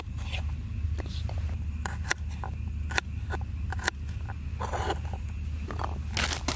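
Folding knife cutting garlic cloves on a wooden cutting board: irregular sharp taps of the blade on the board, over a steady low hum.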